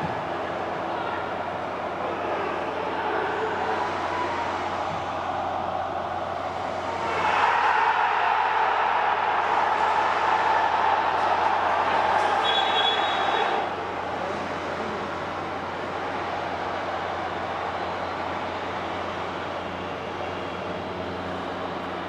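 Field-level ambience of a football match in an empty stadium: a steady hum and noise, louder and fuller for several seconds in the middle. Near the end of that louder stretch comes a short, high referee's whistle blast.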